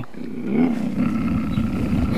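A low, rough growl that wavers in pitch and carries on steadily from about half a second in.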